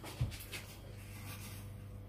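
Faint crunching rustle of crushed Doritos crumbs as a hand presses a piece of egg-dipped cheese into them in a glass dish, over a steady low hum. A soft low thump comes just after the start.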